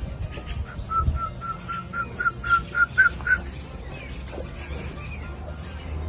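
A bird calling a quick series of about ten short whistled notes, roughly four a second, each a little higher and louder than the last, over a low steady hum.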